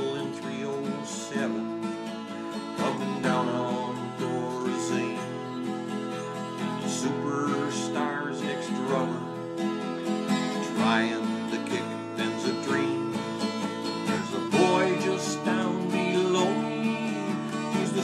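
Acoustic guitar strummed in a steady country rhythm, playing an instrumental break with several chord changes and no singing.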